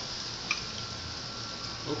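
A pat of butter melting in an aluminium frying pan over a gas flame, with a soft, steady sizzle. A single light click about half a second in.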